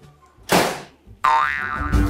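Comic sound effects: a short whoosh about half a second in, then a springy cartoon boing whose pitch dips and rises, with background music coming in near the end.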